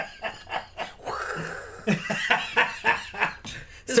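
People laughing hard, in a run of short bursts, with a breathy stretch about a second in.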